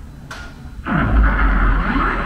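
Show sound effect for a giant moving robot played over loudspeakers: a sudden deep boom just under a second in, then a loud rushing blast with a falling and rising sweep.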